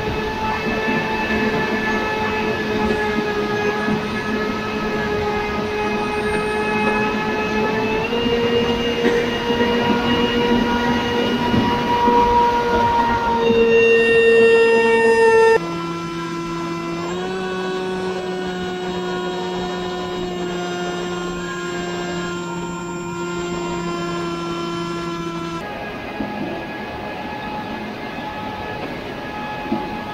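Electric motor and propeller of a ZOHD Talon GT Rebel FPV plane whining steadily at throttle, heard from the onboard camera over a rush of wind. The pitch steps up about eight seconds in, then drops and quietens about halfway through as the throttle comes back, and rises again near the end.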